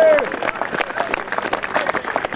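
A crowd applauding, many hands clapping, as a player is introduced. The drawn-out end of the announcer's voice is heard in the first moment.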